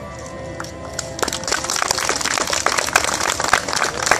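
Background music with steady held notes; from about a second in, a small audience starts clapping and keeps on, louder than the music.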